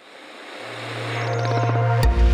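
A rising whoosh of synthetic noise from a logo animation's sound design, with a steady low hum joining about half a second in. It grows louder throughout, building into the opening hit of the logo jingle.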